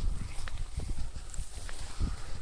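Footsteps through long grass, with irregular low thuds and rustling as the walker and dog push through the stems.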